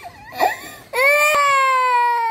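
Toddler girl crying: a short sob just under half a second in, then a long, loud wail from about a second in, held on one breath and slowly falling in pitch.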